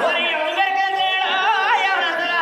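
A man singing a folk song loudly, holding long notes, with quick wavering turns in the melody about a second and a half in.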